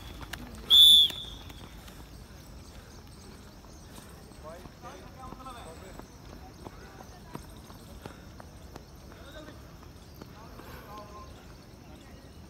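A single short, loud, high-pitched whistle blast about a second in, then faint distant voices across the track.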